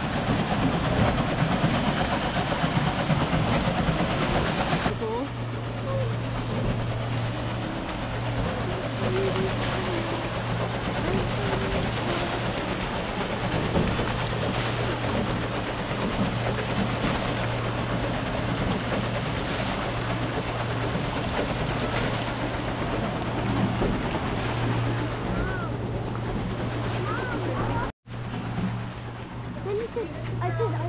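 Stream water rushing and splashing, with a steady low machine hum joining about five seconds in. The sound cuts out briefly near the end.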